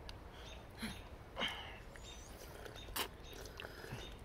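Quiet sipping and slurping of broth from the cracked top of a balut egg: a few short slurps about a second apart, with a sharp click near three seconds in.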